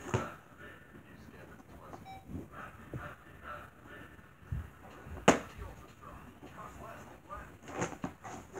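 Handling noises as a Nerf blaster's magazine is worked out of its packaging: scattered knocks and rustles, with one sharp click about five seconds in.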